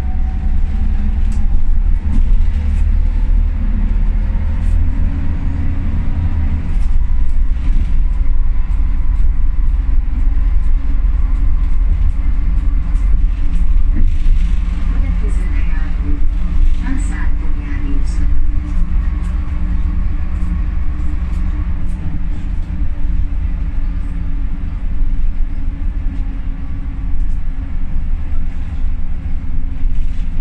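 Ikarus 280.49 articulated bus under way, heard from inside the passenger cabin: a deep diesel rumble with the howling of its ZF gearbox and the whine of its rear axle, one whine rising in pitch over the first seconds as the bus gathers speed.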